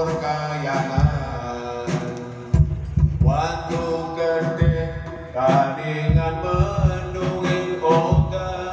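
A man singing a slow Javanese song into a microphone, with long held notes that glide between pitches, over amplified backing music with a low, regular beat.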